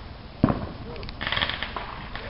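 A firework going off inside a small wooden shed: a single dull bang about half a second in, then a brief burst of crackling.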